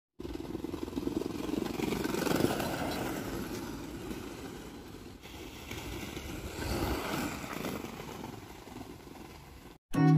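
Wheels of a small cruiser skateboard rolling over paving and asphalt: an uneven rolling noise that swells about two and seven seconds in and stops suddenly just before the end.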